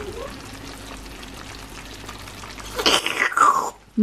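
Freshly baked tartiflette crackling in its glass baking dish, a steady fine sizzle of the hot cheese and potatoes. About three seconds in, a louder short sound with a falling pitch cuts across it.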